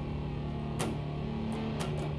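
Electric guitar strummed, its chords ringing on between three strums: one about a second in and two close together near the end.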